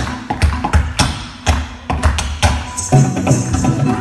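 Tap shoes and kathak footwork with ghungroo ankle bells striking the stage in a quick, irregular run of sharp taps and jingles. The strikes are heard largely on their own at first, then the instrumental accompaniment with drums comes back in about three seconds in.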